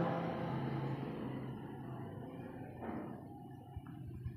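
Felt-tip marker writing on a whiteboard: faint rubbing strokes, with a few small clicks near the end.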